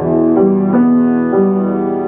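Piano, left hand playing an E minor broken-chord pattern in the bass (E–B–E–G–B–G, an octave arpeggio), single notes struck one after another and left ringing.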